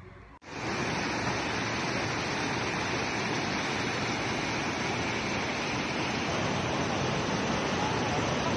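Muddy floodwater rushing over rocks and debris: a loud, steady rush that cuts in suddenly under half a second in.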